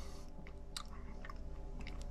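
A person chewing a mouthful of baked beans, with a few short, faint mouth clicks over a faint steady hum.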